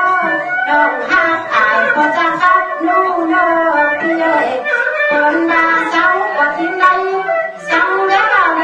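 Tai Lue khap singing: a voice sings a bending, ornamented melody over instrumental accompaniment.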